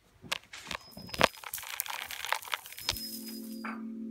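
Plastic bead curtain clacking and rattling as someone pushes through it, a quick irregular series of sharp clicks. About three seconds in, a steady low drone of several held tones begins.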